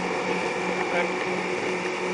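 A boat's engine running steadily: a low, gently pulsing hum with a constant higher whine over it.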